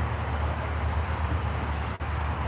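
A steady low mechanical hum under a rumbling background noise, like a running engine or machinery.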